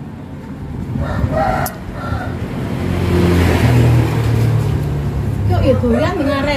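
A motor vehicle passing: a low engine rumble builds to its loudest about midway and eases off near the end. Faint voices come in briefly about a second in.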